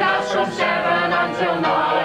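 A group of voices singing a jaunty song together, accompanied by an upright piano.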